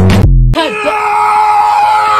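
Music with a heavy bass beat cuts off about half a second in. A man's voice then takes up one long, steady, high-pitched yell, held on a single note.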